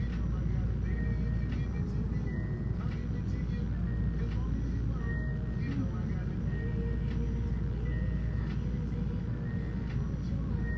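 Steady low rumble of a ceiling air conditioner running, with faint music over it.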